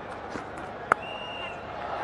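Cricket bat striking the ball once, a sharp crack about a second in, over the low noise of a stadium crowd. A brief high whistle follows the shot.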